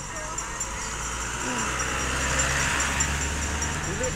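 A road vehicle passing on the highway: its tyre and engine noise swells to a peak about two and a half seconds in, then fades.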